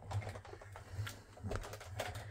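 Sizzix Big Shot die-cutting machine being hand-cranked, giving a series of irregular light clicks as its plastic cutting plates feed through the rollers over a fabric-laden die.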